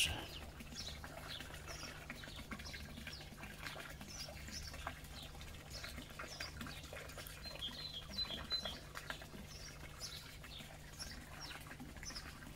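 Faint songbird chirps scattered throughout, with a short rapid trill about eight seconds in, over a steady low hum.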